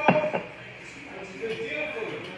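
Two quick knocks of kitchenware being handled, about a third of a second apart, with a faint murmur of voices behind them.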